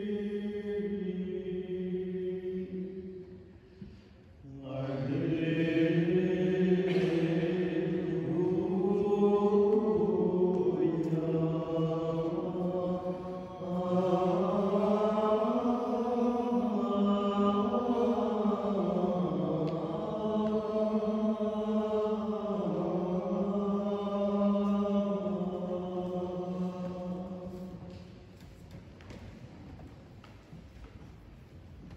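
Monks singing Gregorian-style plainchant: a single unaccompanied melodic line in long, slowly moving notes, with a brief break about four seconds in and a fade near the end.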